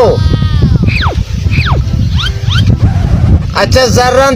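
A run of four or five quick falling whistles, each sliding steeply from high to low, over a steady low rumble.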